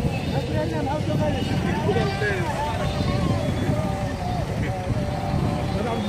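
Several people's voices talking and calling over one another, with no single clear speaker, over a steady low rumble that may be from vehicles moving across the ground.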